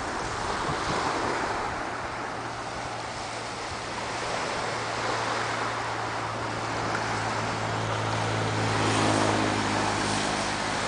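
Small waves breaking and washing up a pebbly beach, with a low steady engine hum underneath that grows louder in the last few seconds.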